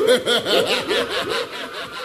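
A warbling electronic tone, sweeping up and down in pitch about five times a second, fading slightly near the end.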